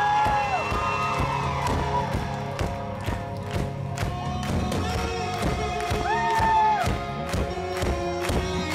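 A rock band playing live, heard from within the audience: electric guitar and a steady drum beat, with long held notes that bend up into pitch, one near the start and another about six seconds in.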